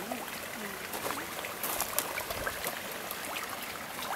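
Koi thrashing and crowding at the surface of a pond: a steady wash of moving water with many small, irregular splashes.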